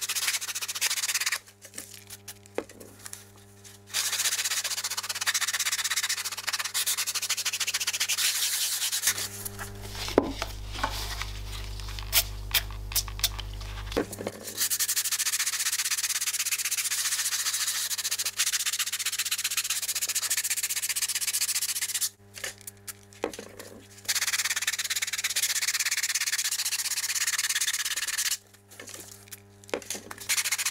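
A damp packaging-foam block scrubbed back and forth over the fabric covering of a watch box, a rough rubbing scrape in long runs that stops twice for a couple of seconds. The scrubbing is lifting old red paint off the fabric. A few light clicks come in the middle.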